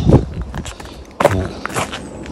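A few footsteps on a driveway of loose chippings, each step a short crunch at uneven spacing.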